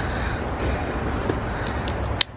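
Steady rumble of wind on the microphone, with a few small clicks in the second half from the backpack being handled.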